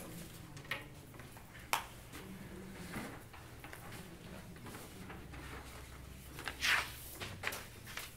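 Light handling sounds in a quiet small room: a few soft knocks and clicks as loose papers are picked up and carried to a wooden podium, with a brief, louder rustle of paper near the end.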